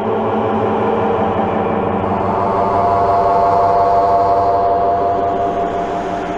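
A sustained droning tone made of many steady pitches held together, swelling slightly through the middle and fading out near the end.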